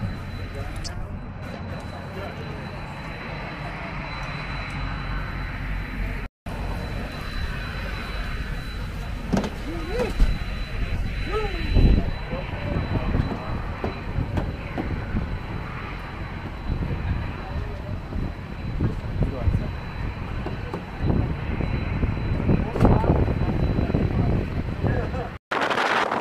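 Steady rumble of jet aircraft engines with a faint high whine running through it, under indistinct voices.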